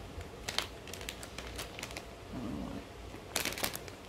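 Plastic candy bag crinkling as it is handled and pulled open, in scattered crackles with a denser run of crinkling near the end.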